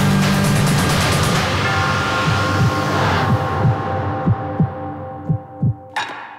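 Dark, suspenseful theme music on sustained tones, its upper layers thinning out about halfway through. From about two seconds in, low thuds come in, several in pairs like a heartbeat.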